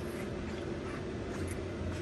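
Quiet, steady background hum of a large indoor room (room tone), with no distinct event.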